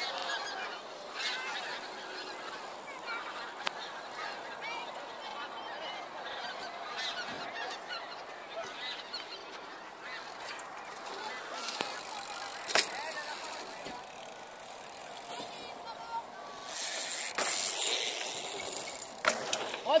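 A large flock of migrating birds flying overhead in long skeins, many calls overlapping continuously. A louder rush of noise comes near the end.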